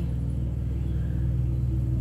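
A steady low hum with no change in pitch or level, and no speech.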